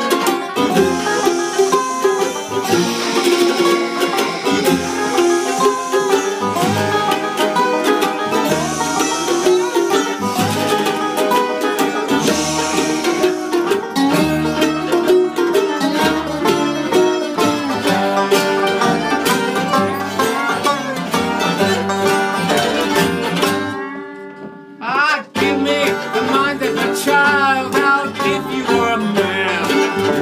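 Acoustic string band playing a sea shanty: banjo picking over an upright double bass and a second plucked string instrument. There is a brief drop in level about 24 seconds in, then the playing picks up again.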